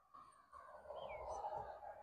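Faint outdoor background noise, with one short falling bird chirp about a second in.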